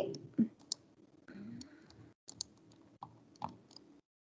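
Faint, scattered clicks of a computer mouse, about half a dozen at irregular intervals, as a presentation is opened and shared on screen.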